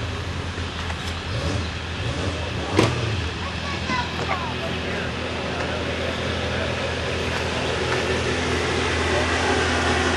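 A steady low engine drone running at an even pitch throughout, with one sharp knock about three seconds in.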